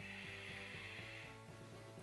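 A person sniffing a fragrance at the wrist: a soft, drawn-out inhale through the nose lasting about a second, heard over faint background music.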